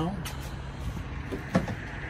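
Steady outdoor background noise with a low hum, and a single short thump about one and a half seconds in.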